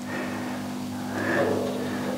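A steady low hum with faint room noise over it, swelling slightly about halfway through.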